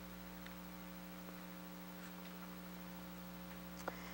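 Steady electrical mains hum under quiet room tone, with one faint click near the end.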